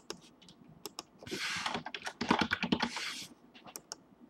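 Typing on a computer keyboard close to the microphone: a few separate key clicks, then a dense burst of fast typing from about a second in, lasting about two seconds, followed by a few more single clicks.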